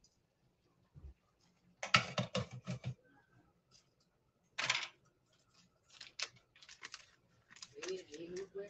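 Clicks and light knocks of kitchen items being handled while cooking, with a cluster of taps about two seconds in, a short rush of noise a little past the middle and scattered lighter clicks near the end.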